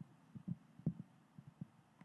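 A handful of faint, low thumps from a handheld microphone being moved and bumped: handling noise.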